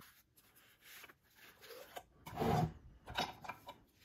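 Faint rubbing and sliding of a stack of sports trading cards as it is lifted out of a clear plastic card box and handled, with a brief louder rub about two and a half seconds in and a few small ones after.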